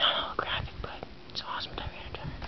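A person whispering, breathy and unvoiced, with a few light clicks of trading cards being handled.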